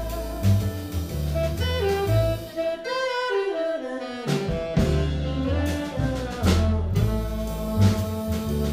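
Live jazz band: a saxophone plays the lead line over double bass, drum kit and piano, with a run downward in pitch about two to three seconds in. The bass drops out for about a second just after the run, then comes back under cymbal strokes.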